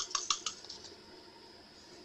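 Small pieces of crushed glass clinking in a small glass jar as they are tipped and shaken out: a quick run of light clicks in the first half second, dying away after.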